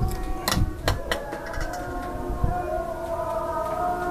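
A few sharp metallic clicks, three close together in the first second or so, from a bonsai hand tool working at the wire coiled on the trunk, over a faint steady background of held tones.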